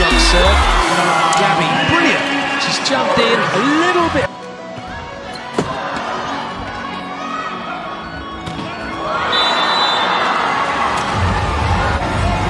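Volleyball arena sound: crowd noise with sharp smacks of the ball, dropping off abruptly about four seconds in. A single loud ball strike comes about five and a half seconds in, and the crowd swells again near the end, with thumping music bass at the very start and again near the end.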